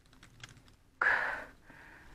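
Bits of rime ice dropping from the branches overhead and pattering down as faint, scattered ticks, then a louder, brief rustle about a second in.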